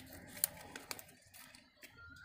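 Origami paper being folded and creased by hand: faint rustling with a few short, crisp crackles, the sharpest about half a second in.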